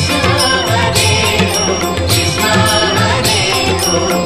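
Background music from an Indian TV serial score, with a steady beat.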